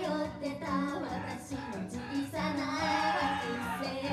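A Japanese idol group of young women singing into microphones over a pop backing track, heard through an outdoor PA system; the voices and music run continuously and grow fuller in the second half.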